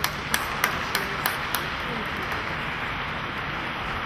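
Audience applause: sharp single claps about three a second at first, then a steady clatter of clapping.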